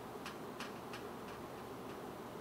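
Whiteboard marker writing on a whiteboard: a string of faint short ticks, about three a second, as the strokes are made.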